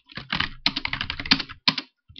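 Computer keyboard typing: a quick, irregular run of keystrokes.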